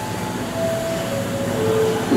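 JoinPack semi-automatic strapping machine running with a steady hum while a new strap is fed out and looped over the bundle.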